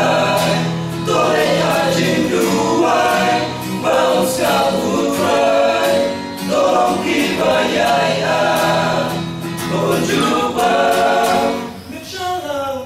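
Male vocal group singing a gospel song in harmony through microphones, in phrases of about three seconds each.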